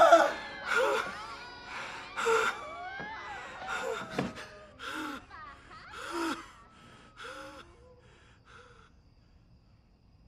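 A man gasping and panting heavily, a voiced moan on each breath, about one breath a second, growing weaker and dying away near the end.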